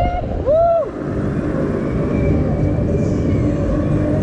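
Two rising-and-falling whoops from a rider in the first second. Then a steady rumble of wind and machinery as the Mondial Turbine thrill ride swings its riders around.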